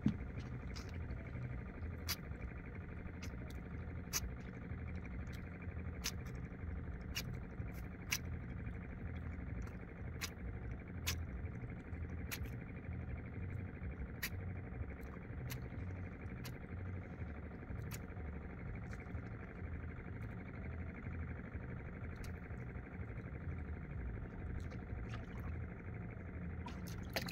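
Quiet ambience in a small wooden outrigger boat on the water: a steady low rumble with a faint hum underneath, broken by sharp, irregular clicks about once a second.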